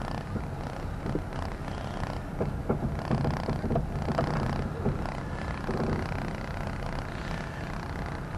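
Car running at low speed, its engine and tyre rumble heard from inside the cabin as a steady low drone.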